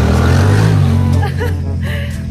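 Engine and road noise of a moving car, a steady low hum with a rushing haze, heard close from the car. After about a second it drops away and background music comes in near the end.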